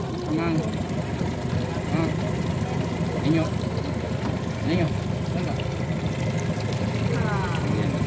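Motorboat engine idling steadily, a low even hum under scattered voices.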